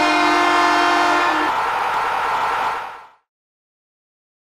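Train horn sounding a chord of several steady tones for about three seconds. Its lowest notes drop out about halfway through, and the rest fades away.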